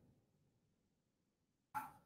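Near silence: room tone, with one brief faint sound near the end.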